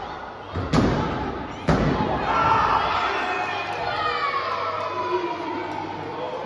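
Two hard slaps on a wrestling ring's mat about a second apart, the referee's pin count, followed by a crowd shouting and cheering.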